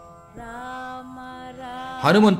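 Soft devotional background music: steady, held instrumental notes begin about a third of a second in, and one note changes a little past a second.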